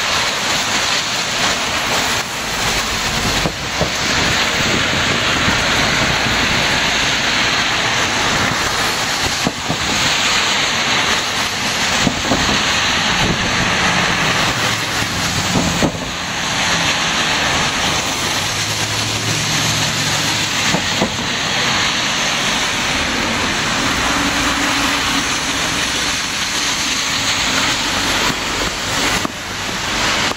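Heavy rain falling steadily, with vehicles driving through the flooded intersection and their tyres hissing on the wet road. A box truck passes about halfway through.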